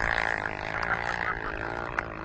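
Car engine held at steady high revs, a buzzy drone with a slight waver in pitch, as the car is driven in a drift.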